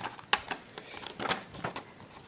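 A sheet of paper being handled and creased by hand, giving a few sharp crinkles and taps.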